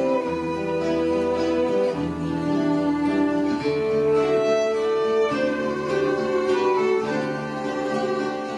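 Small string ensemble playing traditional Mexican music live: two violins holding long melody notes over guitar accompaniment, the chords changing every second or two.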